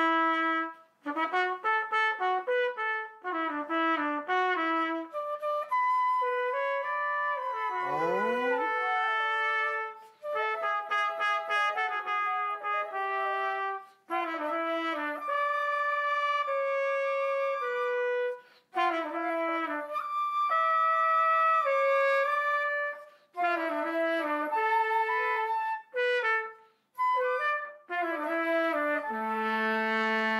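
Trumpet playing a slow melody in phrases separated by short breaks, ending on a long held note.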